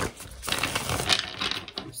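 A deck of tarot cards being shuffled by hand: a dense run of quick, papery card clicks and flicks.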